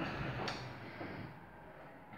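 A refrigerator door pulled open, with a single click about half a second in and quiet room tone after.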